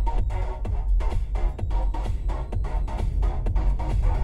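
Electronic dance music with a steady beat and heavy bass.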